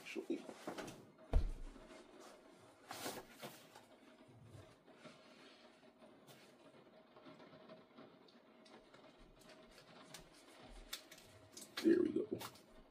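Hands working the straps and hardware of a heavy-duty nylon backpack: scattered clicks and rustles, a thump about a second and a half in, and a cluster of louder clicks near the end, over a faint steady hum.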